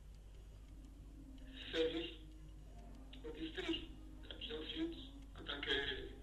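A man speaking in short phrases with pauses between them. His voice sounds thin and cut off at the top, as over a video-call line, with a faint steady low hum underneath.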